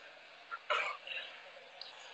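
A man's short, breathy vocal burst about two-thirds of a second in, with a softer one just after, over faint room noise.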